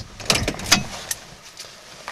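A quick cluster of clicks and rattles, loudest about three-quarters of a second in, from handling inside the cab of an electric-converted pickup. The electric motor, though switched on, makes no audible sound.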